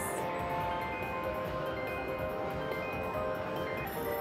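IGT Prosperity Link slot machine's win rollup: many overlapping chiming tones ring steadily as the 'Huge Win' credit counter counts up.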